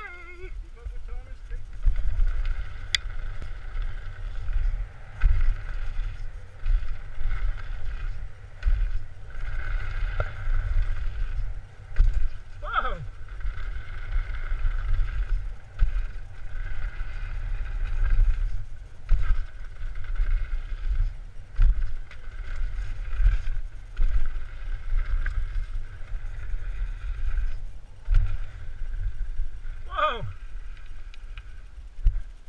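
Wind buffeting the microphone of a helmet camera on a downhill mountain bike ride over dirt jumps: a loud, gusty rumble that surges and drops every second or so, with a steady hiss above it.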